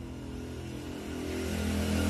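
A motor vehicle's engine running steadily and growing louder toward the end, as if passing close by.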